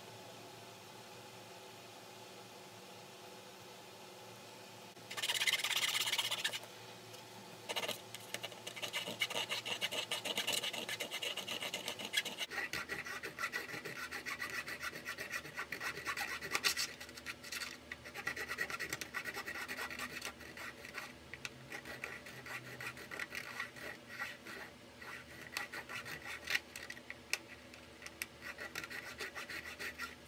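A steel clipper-trimmer blade, from a Wahl Detailer, being scraped rapidly back and forth on a 1 Minute Blade Modifier sharpening plate to sharpen a dull blade that was not catching hair. It starts with a short burst of scraping about five seconds in, then runs on as steady fast rasping strokes from about eight seconds on.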